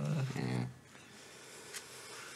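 A man's drawn-out low hum, a held 'mmm' on one steady pitch, fading out less than a second in; then quiet studio room tone with one faint click.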